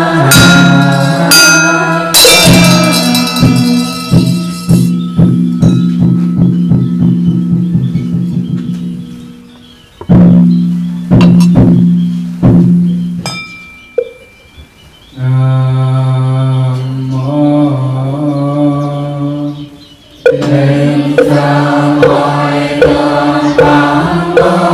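Buddhist recitation chanting by a group of voices, with a struck bell ringing out several times and a fast run of wooden-fish taps that speeds up. The chanting breaks off briefly twice, then resumes with steady taps.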